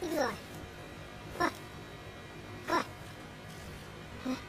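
Three short cries, each falling sharply in pitch, spaced roughly a second and a half apart.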